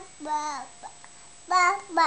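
A baby babbling "ba ba" in a sing-song voice, with two short bursts: one just after the start and one near the end.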